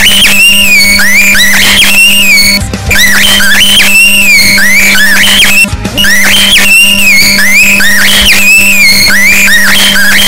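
Pet cockatiel calling in a fast run of rising and falling whistled chirps over a steady low hum. The passage repeats as a loop, with a short break about every three seconds.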